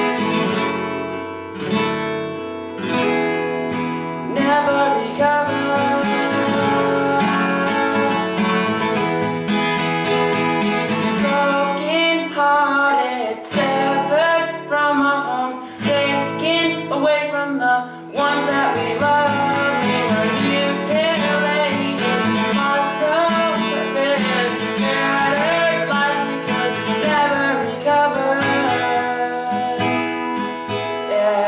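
Acoustic guitar strummed with a young man singing along. For the first few seconds the guitar plays alone, then the voice comes in and carries on over the strumming, with short breaks about halfway through.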